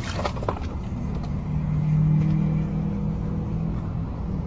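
Iced coffee and ice cubes splash and clatter onto a person and a car door right at the start. A car engine then hums steadily, swelling a little around the middle.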